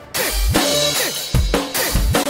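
Acoustic drum kit played along with an electronic dance track. After a brief drop-out right at the start, the beat comes back in with heavy kick and snare hits over the track's deep, falling bass.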